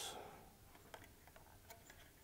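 A few faint, sparse clicks of a small torque driver and fingers working a screw on the CPU socket's metal retention frame, over near silence.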